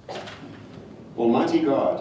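A man's voice reading prayers aloud at a lectern microphone, after a brief noisy sound at the very start.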